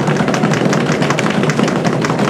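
Audience applauding: a dense, steady run of many hands clapping.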